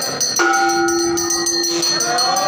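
A temple bell rung rapidly and steadily during aarti, over devotional singing. About half a second in, the singing holds one long steady note for over a second.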